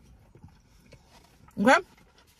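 Quiet pause with only faint room tone and a few soft clicks, then one short spoken "okay" near the end.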